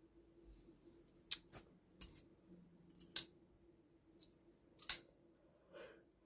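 Several sharp metallic clicks from a Kizer Begleiter XL button-lock folding knife as its blade is swung and locked, the loudest about a second and a half, three seconds and five seconds in.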